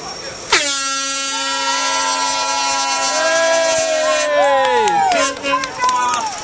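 Air horn sounding one long steady blast of about four seconds as the starting signal for a running race, its pitch sagging as it cuts off, with voices shouting over it.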